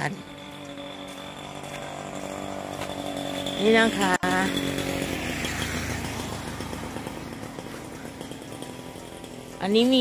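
A small engine buzzing steadily, growing louder over the first few seconds and then slowly fading away.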